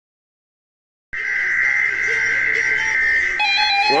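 Weather alert radios going off for a weekly alert test. A harsh, steady buzzing tone starts about a second in, then several receivers' alert beeps join it near the end, just as the broadcast voice begins 'This is a test.'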